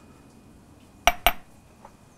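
Two quick clinks about a second in, a glass spice jar knocking against a small stainless steel saucepan while chili powder is shaken in.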